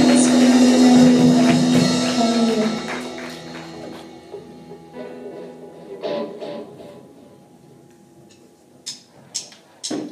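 Live worship band of drum kit, electric guitar, bass and keyboard holding a final chord that dies away over several seconds. A few sharp, short taps follow near the end, before the band comes back in.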